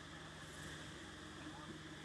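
Faint, steady outdoor background noise with a low, even hum under it.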